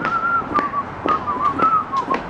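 A person whistling a wavering tune. Footsteps strike a concrete floor about twice a second.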